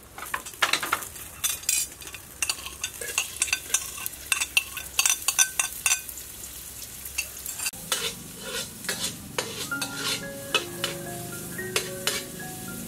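Chopped garlic and onion frying in hot oil in a metal wok, sizzling, with a spatula scraping and clicking against the wok as it is stirred. Light background music with mallet-like notes comes in about eight seconds in.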